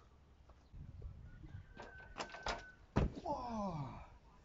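Running footsteps on grass and take-off, then a heavy thump as a person lands a long front flip on a mattress about three seconds in, followed at once by a short cry falling in pitch. The landing is a rough one, not a smooth landing.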